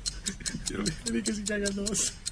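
Rapid, even ticking, about five or six ticks a second, with a faint voice-like tone sounding under it in the second half.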